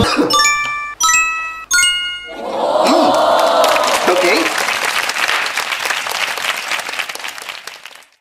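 Three bright chime notes struck about three-quarters of a second apart, then applause with cheering that fades out near the end, after a karaoke song has finished.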